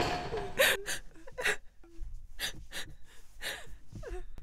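A person's sharp, gasping breaths, one after another about once a second, in distress.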